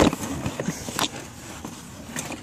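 A cardboard shipping box and its packing being handled as a wooden rifle part is pulled out: rustling with a few sharp knocks, the loudest right at the start and another about a second in.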